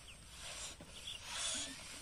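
Several children blowing up rubber balloons by mouth: a run of short, breathy hisses of air, overlapping, a few each second.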